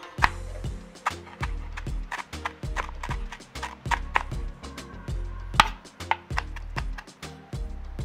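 A chef's knife chopping fresh cilantro on a cutting board, a quick uneven run of sharp chops, over background music with a bouncing bass line.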